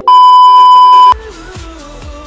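Loud, steady, high-pitched test-card tone, the bleep played with TV colour bars, held for about a second and cut off sharply. Pop music starts right after it.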